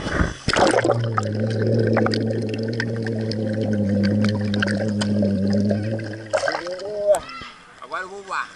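A splash as the camera goes under the pool's surface, then a muffled underwater soundscape for about five seconds: a steady low hum with faint bubbling and crackle. Near the end comes a churning, gurgling rush as the camera breaks back through the surface.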